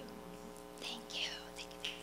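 Faint whispered speech away from the microphone, a few short bursts in the second half, over a steady low hum.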